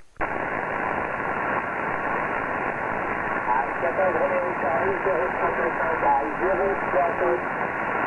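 Shortwave transceiver on the 11-metre band (27.670 MHz) receiving: steady band hiss through the radio's narrow voice passband with a constant whistle running through it. A faint voice comes through the noise from about three and a half seconds in.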